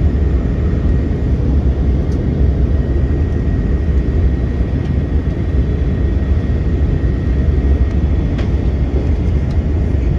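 Airbus A319 cabin noise at a window seat during descent: a steady low rumble of the jet engines and airflow, with a faint steady high whine over it.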